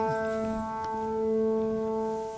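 A mid-range chord on a 1966 Baldwin SF10 seven-foot concert grand piano, struck just before and left to ring: a rich sustained tone slowly dying away.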